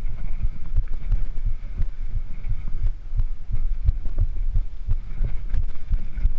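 Mountain bike rolling down a rough dirt trail: a continual run of irregular low thumps and rumble from the tyres and frame taking bumps, with light rattling clicks.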